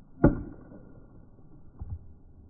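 Baseball bat hitting a pitched ball: one sharp hit about a quarter second in, followed near the end by a softer thump.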